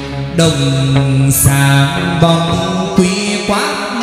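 Hát văn (chầu văn) ritual music: a chanting voice over plucked string notes, with a few sharp percussion strokes.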